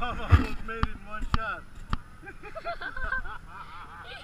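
Young children's high-pitched voices calling out and chattering, with three sharp clicks about half a second apart in the first two seconds.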